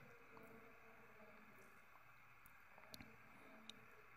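Near silence: faint room tone, with a few light clicks about three seconds in and one more shortly before the end.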